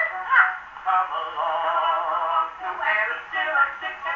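An Edison Diamond Disc record playing through the horn of a Victor III acoustic gramophone: an early popular-song recording with a thin sound, no deep bass and no high treble.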